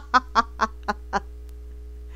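A woman laughing: a run of five short pulses that weaken and stop a little over a second in, over a steady low electrical hum.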